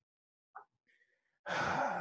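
Near silence, then a man sighs once, a short breathy exhale starting about one and a half seconds in.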